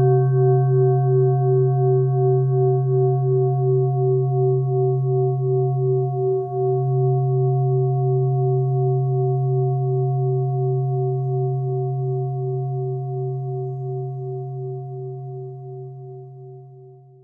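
A singing bowl rings on after a single strike. A low hum and several higher overtones pulse gently about three times a second and slowly fade toward the end.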